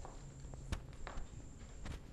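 Dancers' shoes stepping and clicking on a wooden studio floor, with a few scattered sharp clicks, the loudest about three-quarters of a second in and another near the end.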